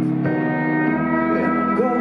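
Steel guitar playing held chords in a live band mix, with a few notes sliding up and down in pitch in the second half.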